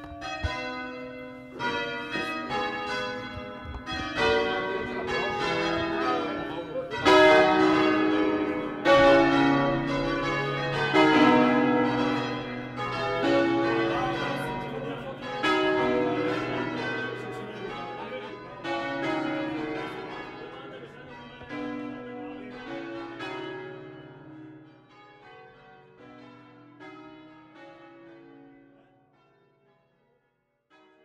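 Church bells swung full circle by rope ('suono a distesa'), many bells striking in overlapping rounds with long ringing tones. The strokes are loudest around the middle, then thin out and die away towards the end.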